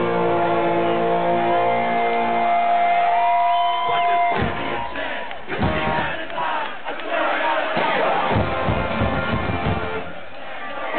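Live Celtic punk band music at concert volume, heard from within the crowd: held notes ring steadily and stop about four seconds in. A noisy mix of crowd shouting and cheering with the band follows.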